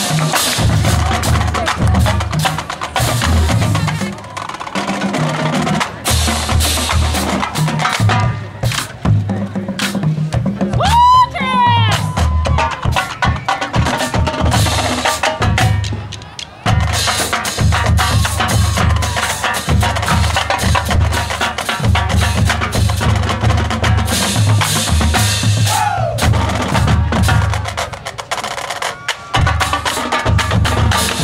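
College marching-band drumline playing a fast cadence feature: rapid snare and tenor drum patterns over a line of tuned bass drums stepping through different pitches, with a brief break about sixteen seconds in. A whistle cuts in twice, about eleven seconds in and again late on.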